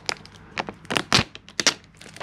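Thin plastic protective film peeled from a smartphone screen crinkling as it is handled, giving a handful of sharp crackles.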